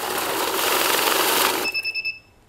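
A 6200T keyboard-design bill counting machine running a stack of banknotes through its feed, a fast, steady riffling whirr. Near the end the notes stop and the machine gives a high electronic beep, the signal it gives when it stops on a suspected fake note.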